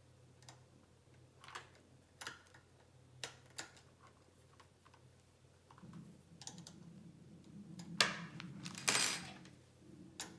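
Light, scattered clicks and small rattles of hands handling cables and the focuser hardware, with a sharper click about eight seconds in and a louder rustle of cables and parts about a second later.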